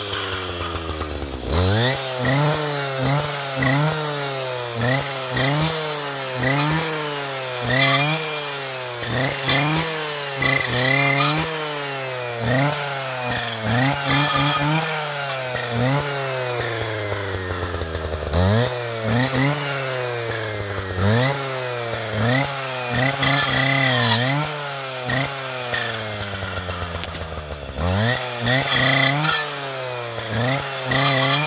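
Husqvarna 545RXT brushcutter's two-stroke engine revving up and dropping back over and over, about once a second, as its saw blade cuts through saplings and brushwood. It falls back to a lower, steadier idle a few times between bursts.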